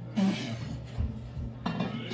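Kitchen clatter: a sharp clink of dishes near the start and another near the end, with dull knocks on the counter in between.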